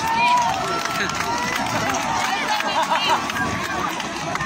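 A large crowd of many voices talking and calling out at once, a steady din with no single voice standing out.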